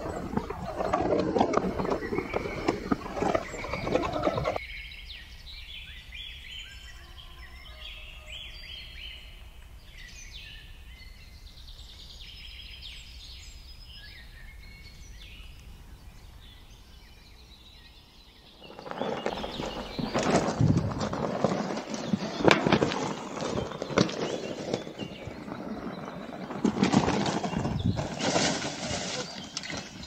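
Birds chirping through a quiet stretch in the middle, between loud, rough clattering noise in the first few seconds and again from about two-thirds of the way in.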